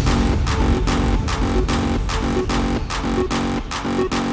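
Hardstyle dance track at full drive: a heavy kick drum beats steadily about two and a half times a second, under a repeating electronic synth figure.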